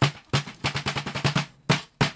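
Bare hands playing a drum whose head is still covered in its plastic wrapping: a fast run of slaps and taps, each with a short low ring. The strikes crowd into a quick roll in the middle and pause briefly near the end.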